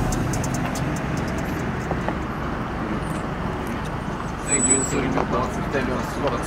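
Steady low rumble of a car engine running on the street, with people's voices starting about two-thirds of the way through.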